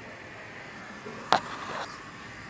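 A single sharp click about a second and a half in, over a low steady hiss.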